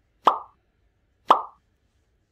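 Two identical short pop sound effects, about a second apart, each a quick bright plop that dies away at once.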